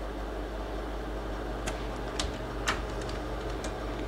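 Slide projector's fan running with a steady low hum, and four sharp clicks in the second half as the slide changes.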